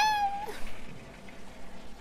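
A woman's drawn-out, high-pitched sung vowel, the tail of a word, sliding down and trailing off about half a second in; then quiet room tone.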